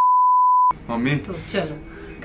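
Colour-bars test-tone beep: a single steady high pure tone, loud, lasting under a second and cutting off suddenly, then people talking.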